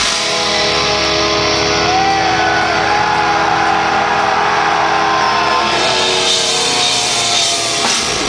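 Death metal band playing live through a loud club PA, with distorted electric guitars and drums. For the first five or six seconds a held, ringing guitar chord sustains with a bending note over it. Then the full band drives on again.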